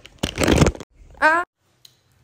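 A rustle of about half a second from the phone being handled close to its microphone, then one short voiced syllable, after which the sound cuts off abruptly at an edit.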